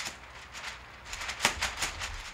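Thin opal diffusion on a frame rustling and crinkling like a grocery bag in irregular soft crackles, with a few sharper crinkles, the loudest about halfway through. It is the sound of the diffusion not being stretched tight to its frame.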